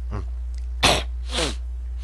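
A man coughing: two short coughs about half a second apart, near the middle.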